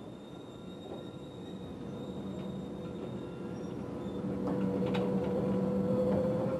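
Steady industrial machinery noise, a rumble with a hum that grows gradually louder, strongest in the last couple of seconds.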